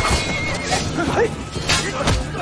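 Dramatic background music with a horse neighing, and a sharp hit near the end.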